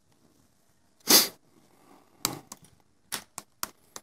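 Computer keyboard keystrokes: a single click a little after two seconds, then a quick run of sharp key clicks near the end. A short rushing noise, louder than the keys, comes about a second in.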